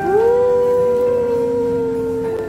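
A single long voice-like note, sliding up at its start and then held steady, over background music.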